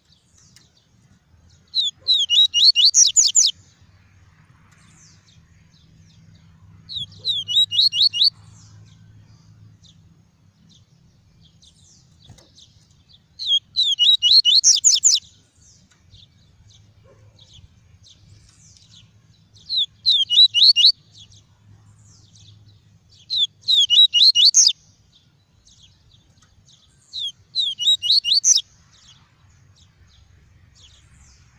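Yellow-bellied seedeater (papa-capim) singing its 'tuí tuí' song: six bursts of rapid, high, repeated notes, each about a second and a half long, with a few seconds' pause between them.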